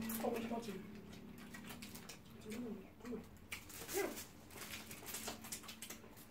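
People eating: a held "mm" hum in the first second, then a few short murmured vocal sounds, over faint chewing and mouth clicks.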